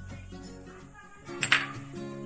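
Background music with steady held notes, and one sharp clink about one and a half seconds in: a utensil knocking against a bowl.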